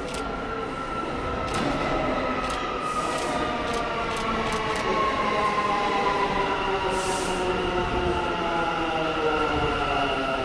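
New York City subway train pulling into a station and braking. Its whine slides steadily down in pitch, wheels click over rail joints in the first few seconds, and there is a short hiss of air about seven seconds in.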